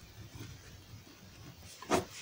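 Ballpoint pen writing and underlining on paper, faint, with a short breath just before the end.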